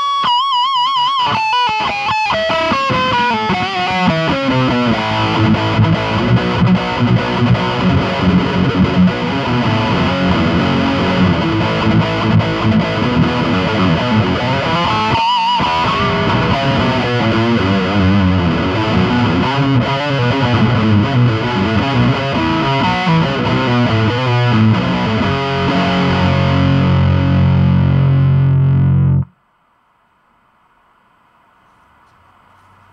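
Schecter Silver Mountain eight-string electric guitar played with heavy high-gain distortion through a Joyo Bantamp Zombie amp head: lead lines with wide vibrato on held notes, then a held low chord that is cut off suddenly near the end.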